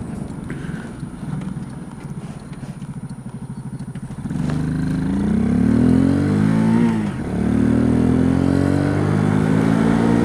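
Kymco K-Pipe 125's single-cylinder four-stroke engine heard through a mic inside the rider's helmet: running low and quiet for about four seconds, then revving up as the bike accelerates. The pitch drops briefly about seven seconds in as it shifts up a gear, then climbs again and holds steady.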